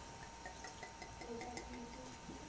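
Faint drinking sounds as liquor is downed from a bottle and a shot glass: a quick run of small clicks, about six a second, and soft gulps, over a faint steady hum.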